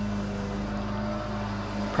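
Steady low hum with a constant pitch and no change over the two seconds, the same background hum that runs under the speech.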